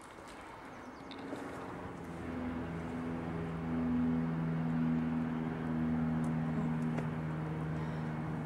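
Steady low hum of a motor running, two steady tones that swell up about two seconds in and then hold.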